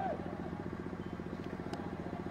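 A small engine running steadily with a fast, even pulse, under faint crowd voices.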